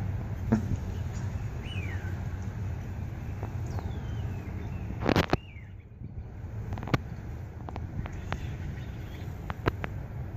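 Outdoor ambience: a steady low background hum with a few short, falling bird chirps and scattered clicks, the loudest a sharp knock about five seconds in.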